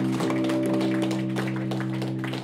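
Electric guitar chord held and ringing on steadily through an amplifier, with scattered light clicks over it.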